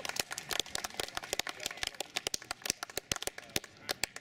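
Scattered applause from a small crowd: many quick, irregular claps.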